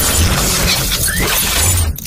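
Cinematic intro sound effect: a loud, sustained crashing, shattering noise over a low rumble, cutting off sharply at the end.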